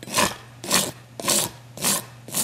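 Hoof rasp drawn across the outer wall of a horse's hoof in four even strokes about half a second apart, rasping off the flare at the bottom of the wall.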